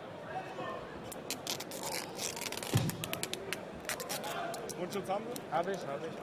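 Adhesive tape pulled off the roll in a run of short crackling rips as a boxing glove's cuff is taped, over arena crowd chatter. A single low thump comes near the middle, and a man's voice starts near the end.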